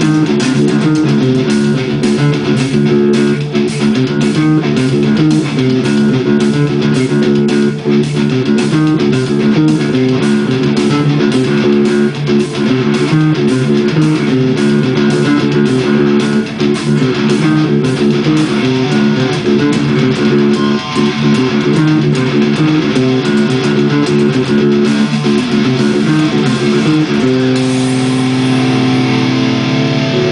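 Electric bass guitar playing a fast, driving riff along with a full rock band recording. About 27 seconds in, the riff gives way to long held notes.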